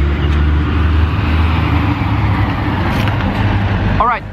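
Diesel engine of a cement mixer truck running as it drives past, a steady low rumble over road traffic noise.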